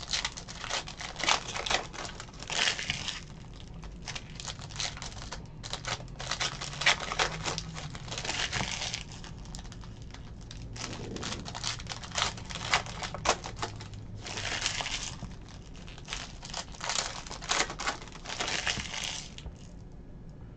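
Sports card packs being opened and the cards handled: wrappers crinkling and tearing, and cards sliding and shuffling, in a string of short rustling bursts.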